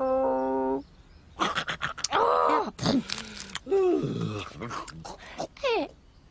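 Wordless cartoon voice sounds: a short hum held on one pitch, then grunts, murmurs and groans that slide up and down in pitch, with little clicks among them.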